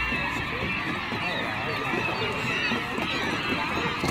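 A large flock of gulls calling all at once, a dense, unbroken chorus of overlapping cries from birds feeding on washed-up anchovies.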